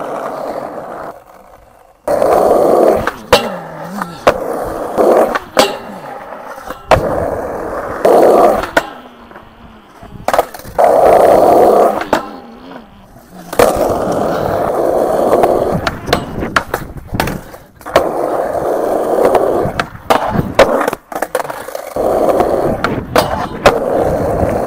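Skateboard wheels rolling on concrete over several runs, each loud stretch broken by sharp clacks of the tail popping and the board landing. Between the runs come a metal flat bar being ground and short quieter gaps.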